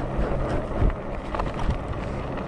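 Wind rumbling over the camera microphone, mixed with tyre and road noise from a Mokwheel Scoria fat-tyre e-bike being ridden at speed.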